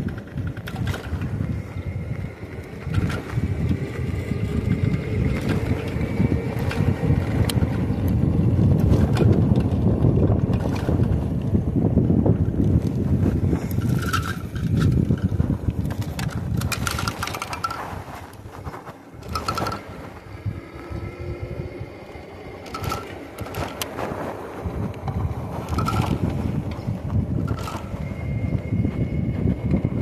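Wind buffeting the microphone and tyre rumble from a Lectric e-bike riding at about 16 mph on pavement, easing for a few seconds past the middle. Scattered sharp clicks and knocks from the bike, with a faint steady whine above the rumble.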